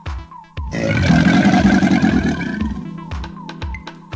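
A roar, loud and about two seconds long, starting just under a second in, over background music with a steady beat.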